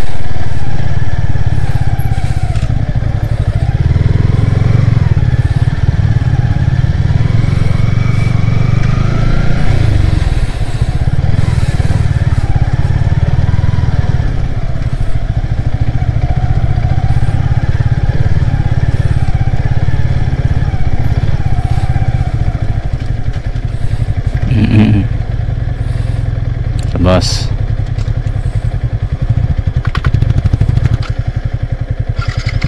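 Motorcycle engine running as the bike rides slowly over loose sand, its pitch rising and falling with the throttle. Two sharp knocks come near the end.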